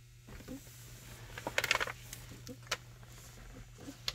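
Faint clicks and rustles from a handheld camera being moved around a car's cabin, over a low steady hum.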